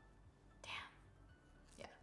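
Near silence with two short, breathy spoken words.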